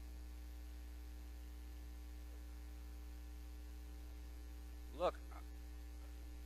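Steady electrical mains hum in the recording chain, a low constant drone with fainter steady tones above it. A brief vocal sound from the preacher cuts in about five seconds in.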